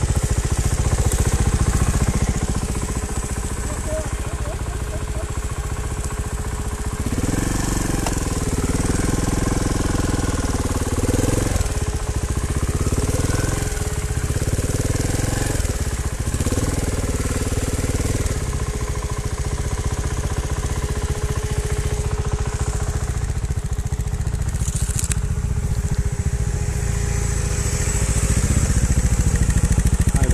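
Trials motorcycle engine running. In the middle stretch it goes through a series of revs, each rising and falling in pitch every couple of seconds.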